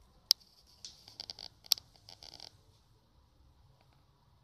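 A cat hissing in several short bursts, starting about a second in and stopping before the halfway point, with two sharp clicks among them; the crouched, ears-back cat is showing a defensive warning.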